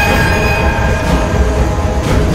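Dark trailer sound design: a steady low rumbling drone under held high, metallic-sounding tones that fade out about halfway through.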